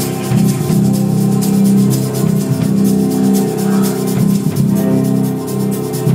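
A live gospel band playing: held chords in the low and middle register over a steady pattern of light, high percussion such as a shaker or hi-hat.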